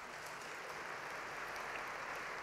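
Audience applauding in a large hall, a fairly faint, steady patter of clapping.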